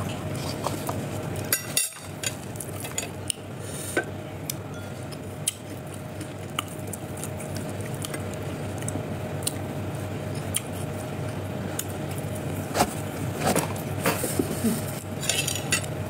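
Eating at the table: scattered small clicks and clinks of a spoon and crockery on a plate as crispy fried tilapia is picked apart by hand, over a steady faint hum and hiss.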